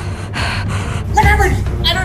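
Two breathy gasps in the first second, then a voice begins speaking. A steady low hum runs underneath.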